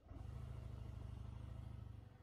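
Motorcycle pulling away from a stop: a low rumble of engine and wind buffeting on the helmet microphone starts suddenly and holds steady.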